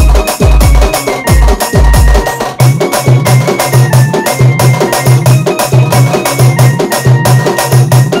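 Telugu pad band style DJ remix. For the first two seconds or so, loud deep bass drum hits fall in pitch. Then they give way to a fast, even drum pattern under a sustained keyboard melody.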